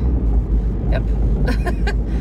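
Steady low rumble of a car heard from inside the cabin while it is being driven.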